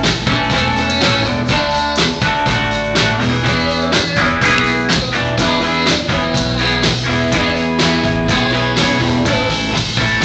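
A rock band playing live and loud: electric bass, electric guitar and drum kit, with a steady driving beat.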